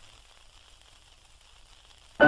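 Faint hiss with a steady low hum: the background noise of an old recording's lead-in, before the music starts.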